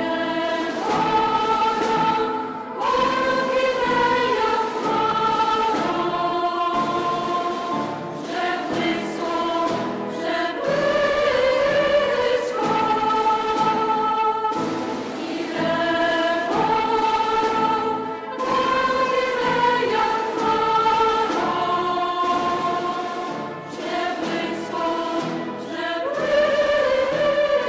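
Women's choir of Basilian nuns singing sacred music in several-part harmony, in long held phrases of a few seconds with short breaks between them.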